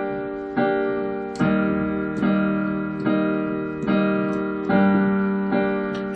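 Piano playing a slow two-chord pattern of G minor and E flat major, a chord struck about every 0.8 seconds and left to ring and fade before the next.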